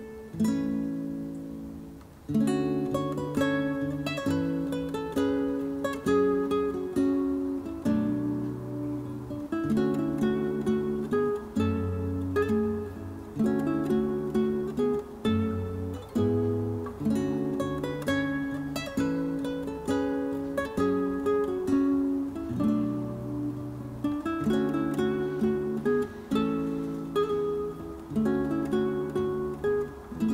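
Background music: an acoustic guitar picking and strumming chords at a steady, unhurried pace, with low bass notes under them.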